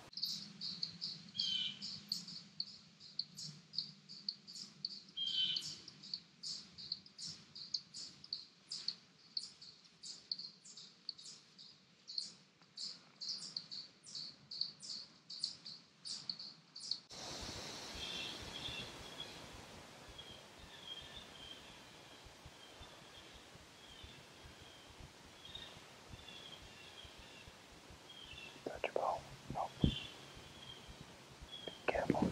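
A bird giving short, high, downward-sweeping chirps, evenly repeated about twice a second, that stop abruptly after about seventeen seconds. Fainter, scattered chirps follow over a quiet woodland background, and a couple of brief louder sounds come near the end.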